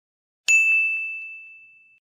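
A single bright bell "ding" sound effect, the notification-bell chime of a subscribe-button animation, struck about half a second in and fading away slowly.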